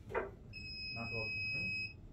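Handheld security metal detector giving one steady high-pitched beep of about a second and a half, starting about half a second in and cutting off just before the end: it is signalling metal in the bag being scanned, which turns out to be a table knife.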